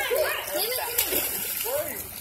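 Children's voices and water splashing as they play in a swimming pool.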